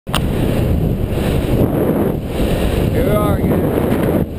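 Heavy wind rushing over the microphone of a camera mounted on a bicycle coasting downhill at speed. A short wavering pitched sound cuts through about three seconds in.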